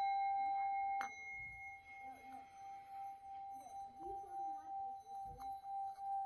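A small brass singing bowl, held on the palm, ringing one clear sustained tone with higher overtones after being struck. About a second in there is a light second contact, after which it rings on more softly with a slow wavering in loudness.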